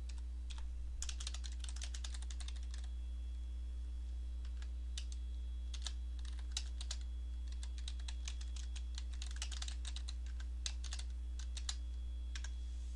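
Typing on a computer keyboard: quick bursts of keystrokes with short pauses between, over a steady low hum.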